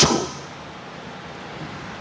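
A man's amplified word ends with a short echo in the hall, followed by a steady, faint hiss of room and microphone noise.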